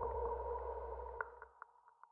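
The closing tail of a minimal techno track: a held synthesizer tone with a low bass hum, dying away, with a few short echoing clicks near the end as it fades out.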